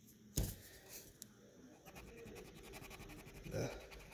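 Wax crayon scribbling on paper, a fast run of faint scratchy strokes starting about two seconds in, after a single knock near the start.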